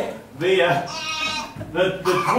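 A person's voice making a drawn-out cry with a trembling, wavering pitch, followed by a shorter vocal sound near the end.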